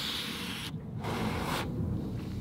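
A drag on a Dovpo Basium squonk box mod: air hissing through the atomiser for just under a second, then after a short pause a second, shorter breathy hiss as the vapour is blown out.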